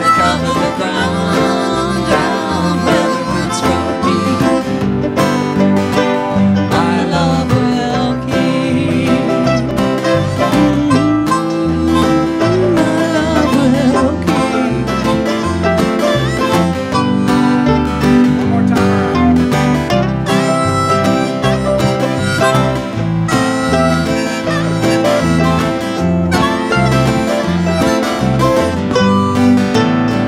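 Live country-bluegrass band playing an instrumental passage: strummed acoustic guitar and electric bass, with a harmonica played into the microphone over them.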